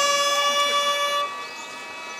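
Gagaku wind music from reed pipes of the hichiriki kind, holding long steady reedy notes. One part drops out a little over a second in, leaving a quieter held tone.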